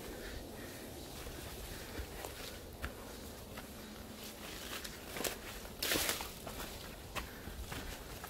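Footsteps on a dirt forest trail through undergrowth, with scattered crunches of dry leaves and twigs and a louder brushing rustle about six seconds in.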